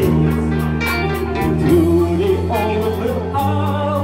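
Live rock band playing: a male voice singing over electric guitars, bass guitar and a drum kit, with cymbal strokes keeping a steady beat of about four a second.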